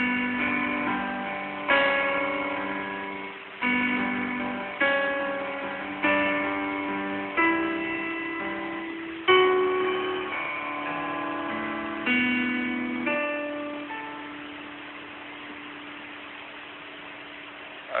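Piano playing a slow chord progression, the intro of a worship song in D. About nine chords are struck a second or two apart, each ringing and dying away. The last chord is held and fades out over the final few seconds.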